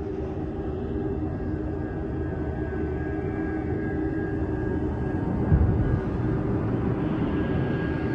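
Low, steady rumbling drone of film-trailer sound design with a few held tones over it, and one deep hit about five and a half seconds in.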